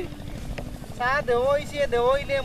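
A high-pitched voice speaking from about a second in, over a steady, low, engine-like rumble, with one short click about half a second in.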